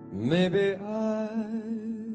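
A male singer's voice slides up into a long, wordless held note with vibrato over a soft sustained accompaniment, as a song begins.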